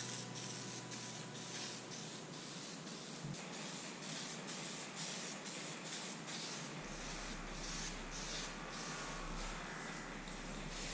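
Aerosol spray paint can hissing in a string of short bursts as a light coat is sprayed on.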